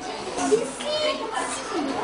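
Several children's voices talking and calling out at once, overlapping one another.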